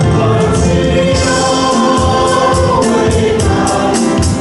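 A church worship team of women and men singing a Chinese praise song together into microphones, over keyboard accompaniment with a steady beat.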